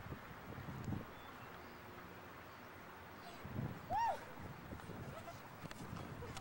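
A child's short, high-pitched squeal that rises and falls, about four seconds in, over steady outdoor background noise, with a couple of dull low thumps earlier.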